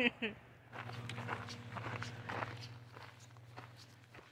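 Footsteps on gravel with some rustling, over a steady low hum that cuts off near the end.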